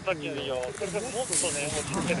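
Voices talking, with a short hiss of skis scraping over snow about one and a half seconds in.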